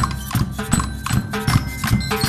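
Marching band percussion section playing snare and bass drums in a quick, steady rhythm of sharp strikes, with thin ringing metallic notes sounding over the drums.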